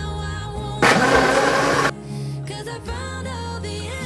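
Background music, broken a little under a second in by about a second of loud electric blender motor noise as it blends chopped carrot, beet and apple in water.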